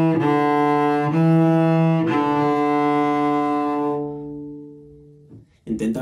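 A cello, bowed, steps down through the final notes of a descending D major scale. The last low note is held, then fades out about five seconds in.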